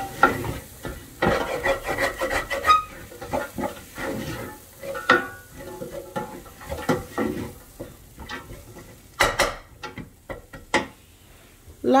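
Wooden spoon stirring and scraping diced vegetables in a stainless steel pot, with a light sizzle of frying underneath. The strokes come irregularly, with one sharper knock against the pot a little after nine seconds.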